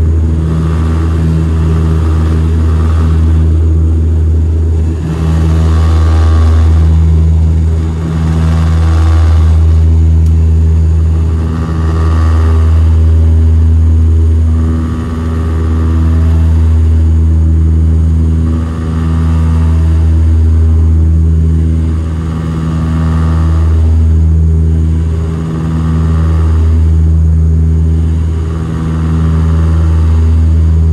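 Cabin sound of a de Havilland Canada Dash 8 Q300's Pratt & Whitney Canada PW123-series turboprop and four-blade propeller at take-off power through liftoff and the initial climb: a loud, deep, steady drone heard from beside the engine. The drone swells and fades about every three seconds.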